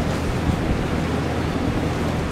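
Steady hiss with a low hum underneath: the background noise of the lecture's microphone and amplification, heard in a pause between words.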